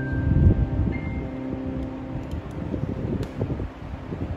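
The last sustained keyboard chord of a song fades out, leaving a low, uneven rumble of background noise with a couple of faint lingering notes.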